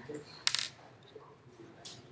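Clicking on a computer: one sharp click about half a second in and a fainter one near the end.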